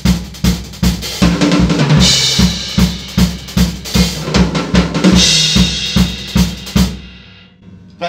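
Cambridge Drum Company maple drum kit playing a fast four-on-the-floor disco groove at about 142 beats per minute, with bass drum on every beat, snare on two and four and a running sixteenth-note hi-hat. Tom hits come about a second in, and open hi-hat washes come twice. The playing stops about seven seconds in and rings out.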